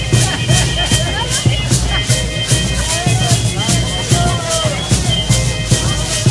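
Danza de pluma procession music: a steady, regular beat of shaken rattles over a low drum-like pulse, with voices in the crowd.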